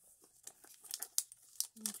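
Small clear plastic three-drawer storage box being handled and set down: a quick string of sharp plastic clicks and rattles with some crinkling, the loudest clack a little past halfway.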